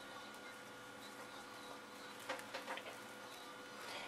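A jar of ground black pepper being shaken over peeled potato chunks in a plastic bowl, giving a few soft rattles about two to three seconds in, over a faint steady hum.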